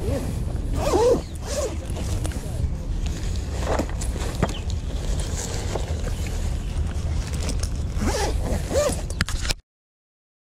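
Handling noise as fishing gear is packed up: rustling of plastic bags and zipping, over a steady low rumble on the microphone. The sound cuts off abruptly near the end.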